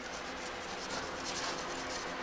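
Felt chalkboard eraser being rubbed across a green chalkboard, wiping off chalk writing in soft, quick, repeated strokes.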